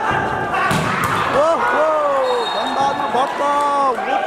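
A volleyball struck hard about a second in, a sharp smack that rings in a large hall, followed by loud voices calling out.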